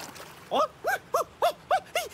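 Cartoon animal character's voice: a quick run of six short yelps, each rising and falling in pitch, about four a second, starting about half a second in.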